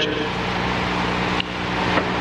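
Steady low electrical hum with background hiss in a pause between words, with a faint click about one and a half seconds in.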